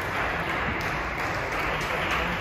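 Steady background noise of a badminton hall, with light scattered clapping and faint ticks.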